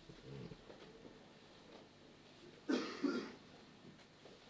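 Quiet room tone in a pause between spoken sentences, broken by a brief cough about two and a half seconds in.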